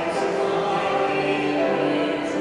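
A woman and a man singing a sacred song together in held, sustained notes, in the blend of a small choir.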